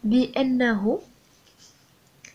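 A woman's voice speaking briefly, then faint scratching of a pen writing on paper.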